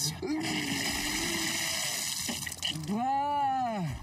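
A man vomiting water violently: a strained, wavering vocal heave over a gushing, splashing sound for about two seconds, then a loud retching groan that rises and falls in pitch near the end.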